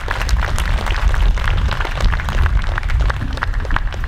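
Wind rumbling on the microphone, with scattered sharp clicks throughout.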